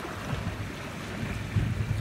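Wind rumbling on the microphone over the steady wash of sea swell on a rocky shore, the rumble growing stronger near the end.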